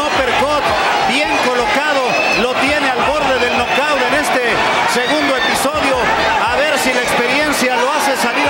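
Male Spanish-language TV boxing commentator talking over steady crowd noise in the arena.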